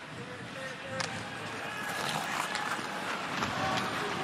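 Ice-hockey arena ambience: a steady wash of crowd noise and skating, with a single sharp knock of the puck about a second in.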